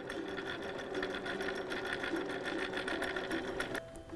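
Electric sewing machine running at a steady speed, its needle stitching a seam in rapid, even clicks over the motor's hum. It stops shortly before the end.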